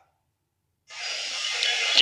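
Dead silence for almost a second, then a steady hiss that rises slightly: the background noise of the live field feed coming up before the reporter speaks.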